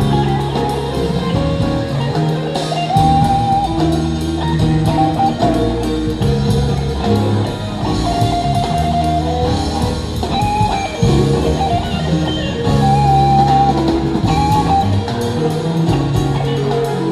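Live rock band playing an instrumental passage: electric guitar lead lines with held, sustained notes over bass guitar and drum kit.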